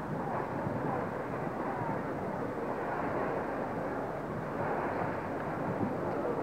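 Steady outdoor street ambience with the indistinct murmur of a gathered crowd's voices and no single sound standing out.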